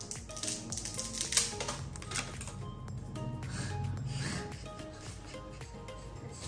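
Dried rice sticks crackling and snapping as they are broken by hand over a pot, busiest in the first half with one sharp snap about a second and a half in, over background music.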